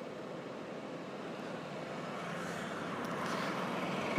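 Road traffic on a bridge, a steady noise of passing vehicles that grows slowly louder as one draws nearer.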